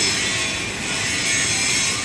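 Steady background machinery noise at an industrial site: a continuous, hiss-like mechanical din without any distinct strokes or rhythm.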